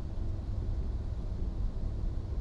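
Passenger train running, a steady low rumble heard from inside the car.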